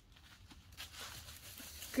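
Faint, irregular rustling and crackling of dry fallen leaves being disturbed, starting a little under a second in and growing slightly louder.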